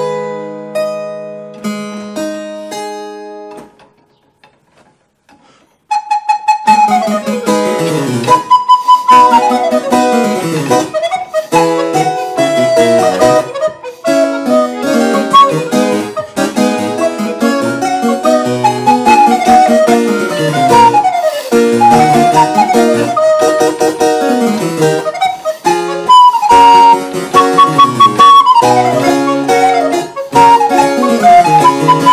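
Harpsichord chords ringing and dying away, then a pause of about two seconds. About six seconds in, an alto recorder in G enters with harpsichord accompaniment, playing a Baroque sonata movement.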